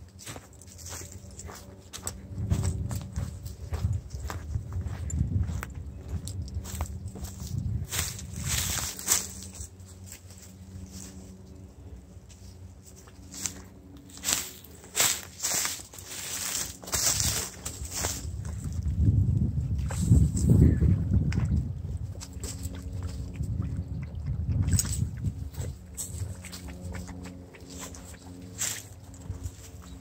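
Footsteps crunching irregularly through dry leaf litter and twigs, with stretches of low rumble, loudest about two-thirds of the way through.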